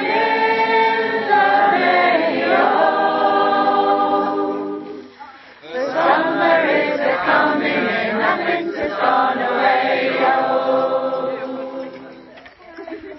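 A group of people singing a song together in chorus, in two phrases with a short pause about five seconds in.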